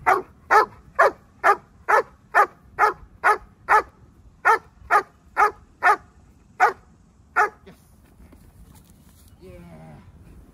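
Young sable German Shepherd barking at the handler in protection training: about fifteen sharp, even barks at roughly two a second. The barking stops about seven and a half seconds in.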